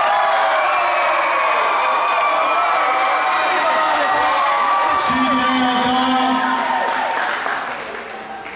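Crowd of wrestling fans cheering and shouting, many voices overlapping. One low voice holds a long shout for about two seconds midway, and the noise eases slightly near the end.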